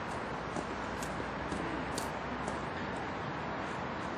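Steady outdoor background noise, with a few faint light ticks about every half second.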